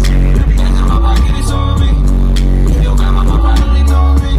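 Loud live hip hop music with deep bass notes and a steady beat, from a festival stage sound system.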